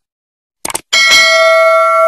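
Subscribe-button animation sound effect: a short click a little over half a second in, then a notification bell rings and keeps sounding.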